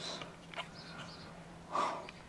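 A single short breath or sniff from the man, about two seconds in, over faint room tone.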